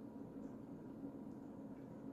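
Quiet, steady background hiss with no distinct sound events.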